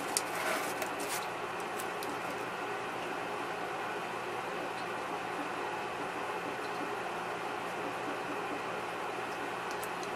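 Steady background hum made of several constant tones, with a few short soft clicks in the first second or so.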